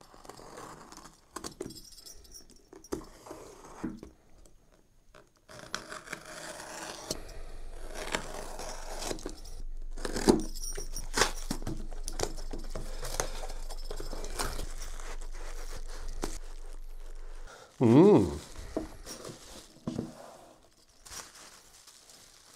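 A taped cardboard box being opened by hand: scattered clicks and scrapes at first, then a long stretch of steady tearing and scraping as the tape and flaps are worked loose, with sharp clicks and knocks, ending with crinkling packaging.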